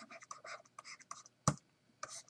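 Stylus strokes scratching across a writing surface as a short word is handwritten, with one sharp tap about one and a half seconds in.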